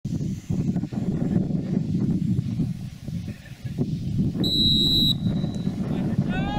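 Wind rumbling on the microphone, with one short, steady, high referee's whistle blast for kick-off about four and a half seconds in.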